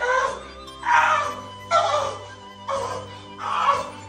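Background music: a repeating phrase of short, voice-like pitched notes about every second, over a steady low sustained tone.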